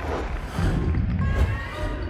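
Broadcast graphics transition stinger for a countdown number: a whoosh over a deep, sustained low rumble, with musical tones.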